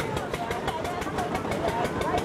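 An engine running with a rapid, even beat under people's talk and chatter.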